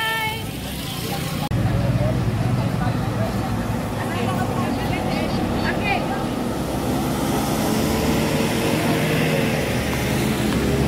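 Busy roadside crowd ambience: a vehicle engine runs with a low steady hum under the chatter of many people.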